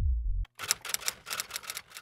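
Typewriter sound effect: a quick run of about ten key clacks over a second and a half, typing out a title card. The tail of background music ends just before it.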